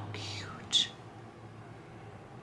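A woman whispering softly, a breathy trailing-off with a short sharp hiss of an 's' under a second in, then low room tone.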